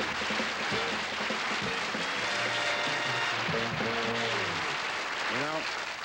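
Studio audience applause with music playing over it.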